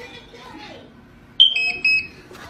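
Electronic power-on beeps of a cheap Bluetooth speaker, about one and a half seconds in: one short high beep, then two quick slightly lower beeps. They come from the speaker hidden inside a PC case.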